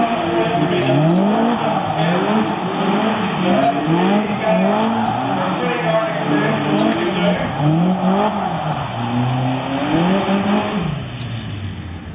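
Lightweight open two-seater sports car's engine revving up and down over and over, about once a second, as the car does tight doughnuts. The engine fades near the end as the car pulls away.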